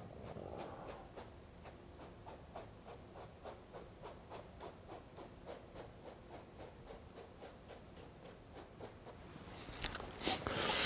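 Faint scratchy strokes of an oil-paint brush on canvas, an even, quick dabbing at about four strokes a second.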